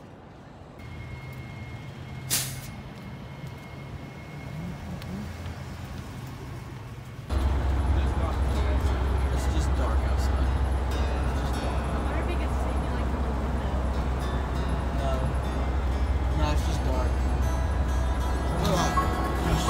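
Low background hum with a single sharp click about two seconds in, then from about seven seconds a steady, much louder low engine and road rumble heard inside the cabin of a moving bus.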